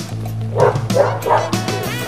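Wheaten terrier barking three times in quick succession over a song with singing playing in the background.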